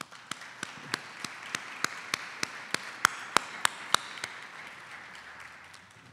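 Audience applause, with one person's claps close to the lectern microphone standing out sharply at about three a second. The applause fades away by near the end.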